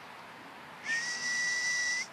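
A single whistle, blown to call the dog: it starts about halfway through and is held for about a second at one steady pitch with a breathy hiss, rising slightly near the end.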